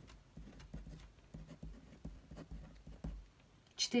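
Ballpoint pen writing numbers on a sheet of paper on a table: faint scratching with small, irregular pen strokes and taps.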